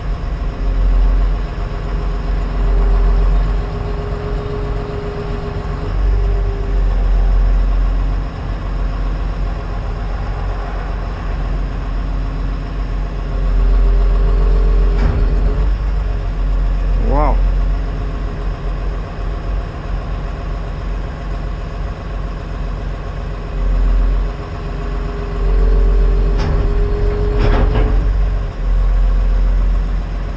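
Excavator diesel engine running, heard from inside the cab, with a steady hydraulic whine coming in three spells of a few seconds each as the hydraulics are worked under load. A brief wavering high tone rises and falls about halfway through.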